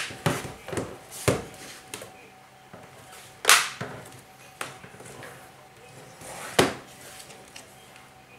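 Plastic bottom cover of a Lenovo ThinkPad L480 laptop snapping into place as it is pressed shut by hand: a series of sharp clicks at irregular intervals, the loudest about three and a half and six and a half seconds in.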